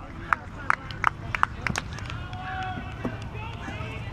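A quick series of sharp taps, about three a second, stopping about two seconds in, over faint outdoor background noise.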